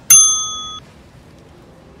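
A single bright, bell-like ding: one sharp strike with several clear ringing tones that fade and then cut off abruptly after under a second.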